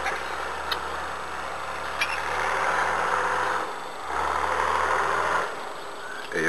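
Farm tractor engine running steadily, its low drone dropping away briefly about four seconds in and easing off near the end.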